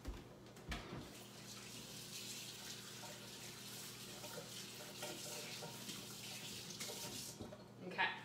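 Kitchen tap running into a sink while hands are washed: a steady rush of water starts about a second in and stops sharply near the end, after a couple of knocks at the start.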